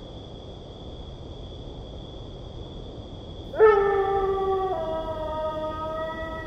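A steady, high-pitched insect drone, then about three and a half seconds in a long canine howl starts loudly, holding its pitch and stepping lower partway through.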